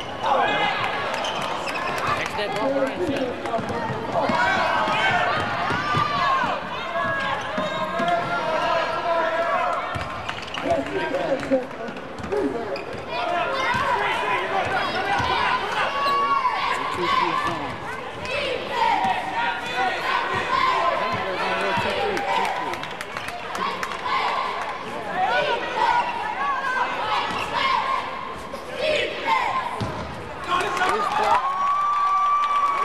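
Live basketball play on a hardwood court: the ball bouncing and thudding, under continual shouts and chatter from players and spectators.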